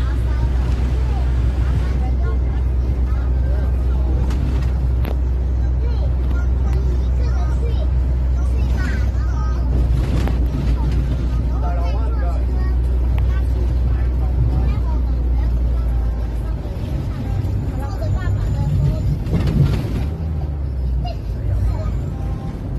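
Minibus engine and road noise heard from inside the cabin while driving, a steady low drone. About three-quarters of the way through, the drone becomes uneven.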